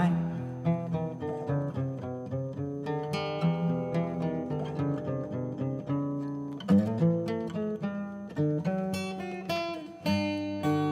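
Solo acoustic guitar playing a fingerpicked instrumental passage of single ringing notes, with a louder strummed chord about two-thirds of the way through and more strums near the end.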